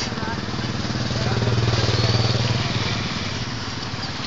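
Engine of a passing motor vehicle, with a low pulsing hum that grows louder to a peak about two seconds in and then fades away.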